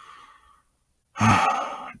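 A faint intake of breath, then a heavy, breathy sigh a little after a second in, from a reader voicing a weary, saddened speaker.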